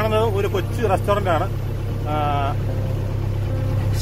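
Shikara motorboat's engine running steadily with a low drone as the boat moves along the water.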